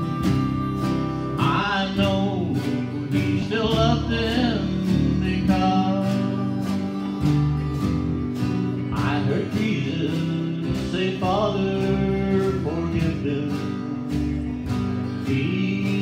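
Live country-gospel band playing an instrumental lead-in: acoustic and electric guitars with drums keeping a steady beat, and a harmonica carrying a melody line with bent notes.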